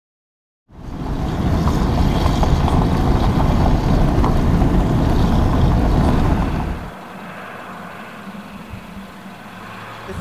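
Steady, loud rumble of vehicle engine and tyres on a dirt road, heard while following a fire department water tender that is spraying water onto the road. It starts just under a second in and drops to a much quieter steady background about seven seconds in.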